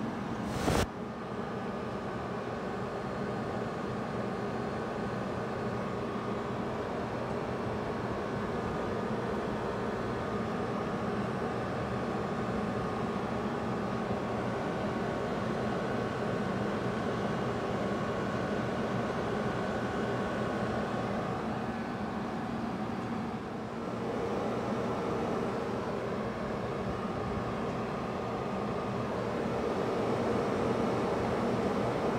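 Small commercial refrigeration unit running steadily while it is charged with refrigerant, its compressor giving a continuous hum with a few steady tones. A single sharp click comes just under a second in.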